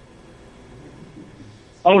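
A pause on a call-in phone line: faint steady line hiss with no clear event, then a man's voice over the telephone line starts just before the end.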